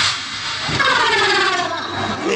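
A stage performer's voice in one long drawn-out cry, slowly falling in pitch, after a short knock at the very start.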